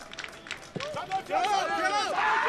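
Football players shouting on the pitch, with a single sharp thud about three-quarters of a second in as the ball is struck for a free kick. More shouting follows as the shot goes toward goal.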